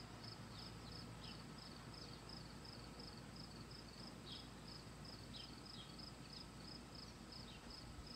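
Faint, steady insect chirping, an even pulse about three times a second, with a few faint short higher calls over it.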